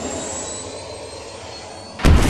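A broad wash of cymbal and amplifier noise ringing out and fading steadily after the heavy rock song's final hit, with no drums or bass left.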